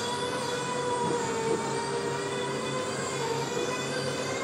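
Powered roller shutter door rising, its motor running with a steady whine over a low rumble.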